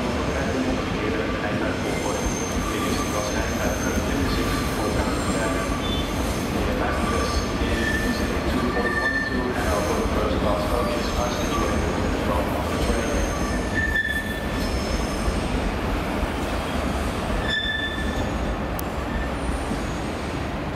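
Passenger train rolling slowly over curved station track, its wheels squealing in short high notes at several pitches over a steady low rumble of running noise.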